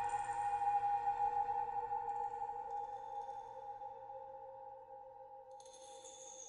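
Ambient electronic music from a Mutable Instruments modular synthesizer: a chord of steady held tones, slowly fading. Faint high tones flicker in partway through, and a brighter high tone enters near the end.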